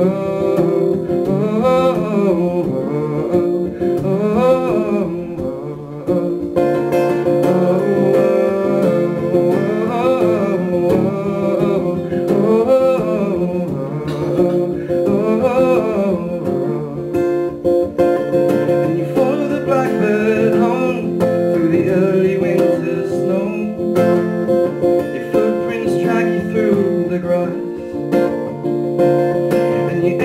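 A man singing to his own acoustic guitar, strummed at a steady pace, a slow folk-pop song played live.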